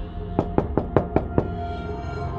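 Six quick knocks on a door, about five a second, over sustained, dark background music.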